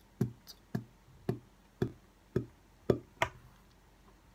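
Beatboxed kick drum: a short, tight, shortened "b" made with the lips, repeated about twice a second, seven strokes, stopping about three quarters of the way through.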